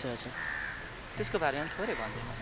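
A crow cawing: a quick run of calls starting a little over a second in.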